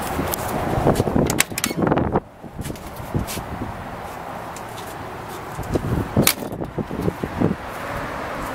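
A Jeep Grand Wagoneer's door being worked by hand: a cluster of handle and latch clicks about one to two seconds in as it opens, then more clicks and a sharp knock about six seconds in as it is closed, over a steady outdoor hiss.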